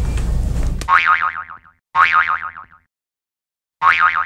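Cartoon 'boing' spring sound effect played three times, each a quickly wobbling tone that fades out in under a second; the third starts just before the end.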